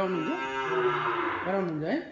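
A cow mooing: one long call, then a shorter one that rises in pitch near the end.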